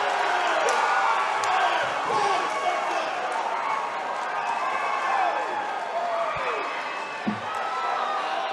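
Crowd cheering and shouting, many voices overlapping, with a dull thump about seven seconds in.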